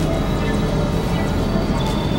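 Experimental electronic synthesizer drone music: a dense, noisy wash with thin steady high tones held above it. A new high tone comes in near the end.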